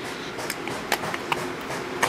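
Several faint clicks and light handling noise from a plastic Epiphany Shape Studio craft punch being fiddled with to free the pressed piece.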